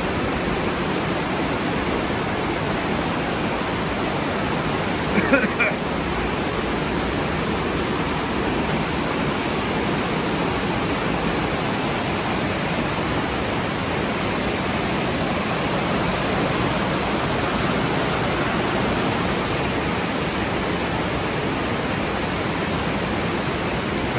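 Storm runoff rushing through a flash-flooded arroyo channel that is running full after rain: a steady, very loud rush of fast water.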